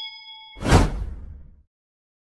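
Sound-effect ding of a notification bell ringing out and fading, then about half a second in a loud whoosh that swells and dies away.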